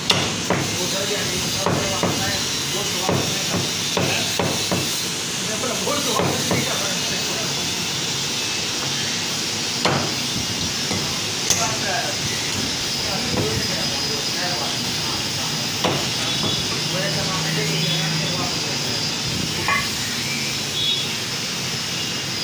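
Butcher's cleaver chopping mutton on a wooden stump block: irregular sharp chops, more frequent in the first several seconds and sparser later, over steady shop background noise.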